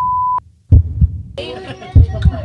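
A steady, high electronic beep tone over low thuds cuts off suddenly just under half a second in. After a short gap and another thud, people's voices start talking about a second and a half in.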